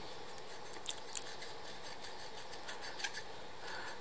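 Faint light scraping and a few small clicks of a steel vernier caliper being worked against a machined steel washer, measuring the distance between two scribed marks.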